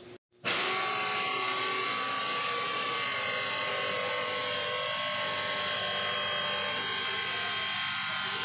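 Bandsaw running steadily, starting about half a second in, its blade cutting through an aluminum round bar.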